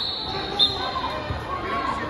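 Wrestling in a large gym: dull thumps of bodies on the mat amid crowd chatter, with a brief high squeak about half a second in.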